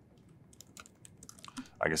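A quick run of light key clicks on a laptop keyboard as a single word is typed, lasting about a second.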